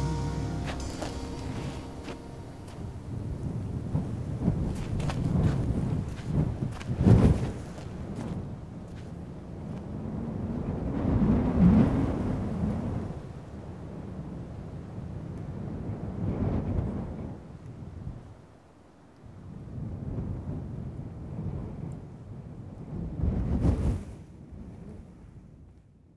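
The song's last chord dies away over the first couple of seconds. A low rumbling noise then rises and falls several times, peaking sharply about seven, twelve and twenty-four seconds in, and fades out at the end.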